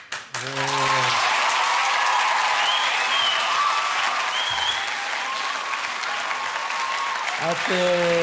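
Studio audience applauding, a steady wash of clapping with voices calling out over it, easing a little toward the end.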